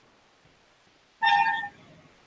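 A single short beep-like tone made of several steady pitches, starting suddenly a little over a second in and cutting off after about half a second.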